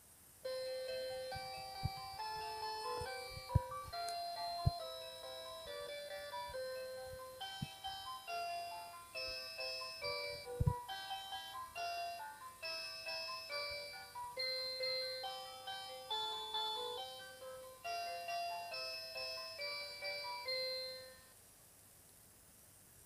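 VTech Moosical Beads toy playing an electronic chiming melody of clear, steady notes, starting about half a second in and stopping about a second before the end. A few sharp clicks sound under the tune.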